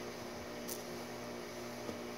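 Steady low hum under an even hiss, with one brief faint high swish about two-thirds of a second in.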